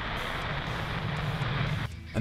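Falcon 9 rocket's nine Merlin engines heard from afar as the rocket climbs: a steady rumble with a low, even hum underneath, which drops away just before the end.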